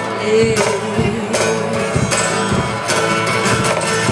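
Acoustic guitar strummed steadily in a live song, with a woman's sung note held and wavering for about a second near the start.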